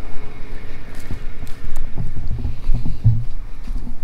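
Footsteps on loose tilled soil and camera handling noise, with irregular thuds near the end, over a steady low rumble of wind on the microphone and a tractor engine running in the field.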